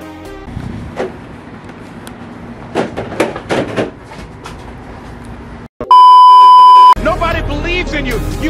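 A loud, steady, single-pitched electronic beep lasting about a second, starting about six seconds in, after a stretch of faint hiss with a few short sounds. Right after it, a song with a singer begins.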